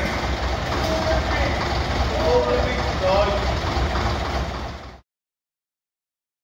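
Bus engine idling steadily, with voices over it; the sound fades out and stops about five seconds in.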